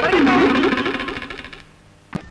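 A person's voice, wavering up and down in pitch, over background noise, with the whole soundtrack fading out over the second half.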